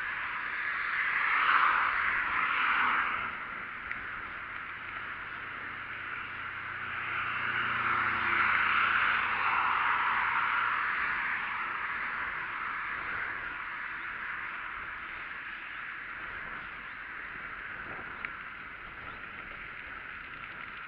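Cars passing on the road alongside a moving bicycle, two of them swelling and fading in turn, over a steady rush of riding and wind noise.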